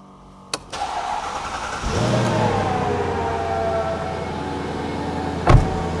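Mercedes-Benz E500 estate's 5.0-litre V8 starting: the starter cranks for about a second, the engine catches about two seconds in with a brief rise in revs, then settles into a smooth, steady idle. A single thump comes near the end.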